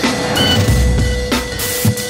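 Intro music: an electronic track with a steady drum beat and a held note underneath.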